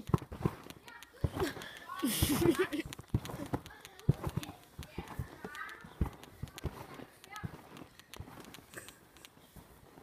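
A child bouncing on a garden trampoline: feet landing on the mat in a run of dull thumps, irregularly about two a second, with the child's voice calling out about two seconds in.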